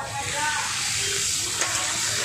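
Fish fillets frying in shallow oil on a large flat griddle, a loud steady sizzle, with a single brief click about one and a half seconds in.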